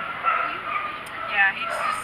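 A dog yipping: two short, high calls, one about a second and a half in and another at the very end.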